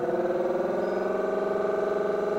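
Homemade 12-volt electric pre-oiler pump running with a steady whine, struggling and running slow as it pushes oil into the engine. It builds only about 10 psi, which the owner puts down to a very narrow oil feed line restricting the flow.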